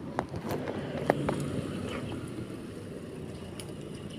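A car passing along the street, its running sound swelling early on and then slowly fading, with a few light footsteps on the road.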